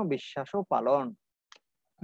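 A man speaking, breaking off a little over a second in, with one faint click in the pause.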